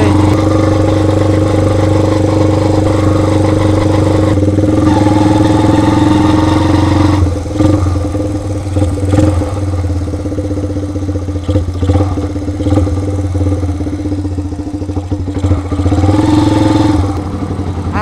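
Kawasaki KZ200 (Binter Merzy) single-cylinder four-stroke engine running while the chopper is ridden. The engine pulls loudly and steadily at first, its note rising as it accelerates. About seven seconds in it eases off and runs less evenly, then pulls up again briefly near the end.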